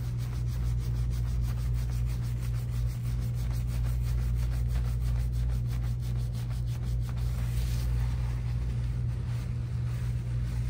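Gloved hands scrubbing shampoo lather through wet, coily hair: a quick, rhythmic, wet rubbing of about four or five strokes a second that fades out about seven seconds in. Under it runs a steady low hum.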